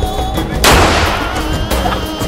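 A single shot from an M1911 .45 ACP pistol about half a second in, ringing out and decaying over about a second, heard over background music.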